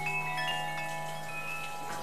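Hanging metal chime tubes being struck by hand, several clear notes starting one after another and ringing on over each other.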